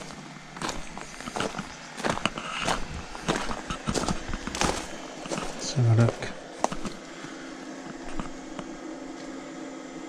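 Footsteps on gravel, two to three steps a second, stopping about halfway through.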